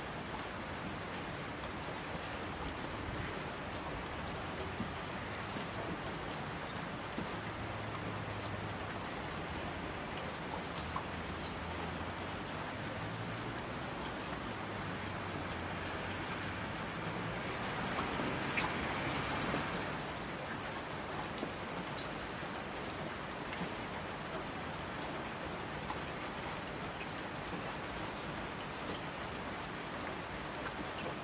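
Steady rain falling, with scattered close drop ticks, swelling briefly louder about two-thirds of the way through.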